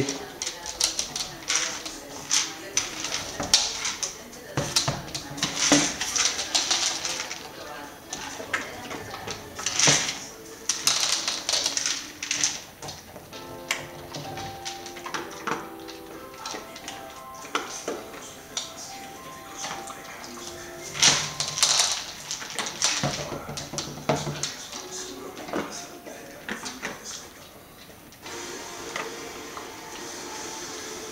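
A hard red treat-dispenser wobbler toy being nosed by a dog, repeatedly tipping over and rocking back upright with irregular clacks and knocks against a wood-effect floor, some loud.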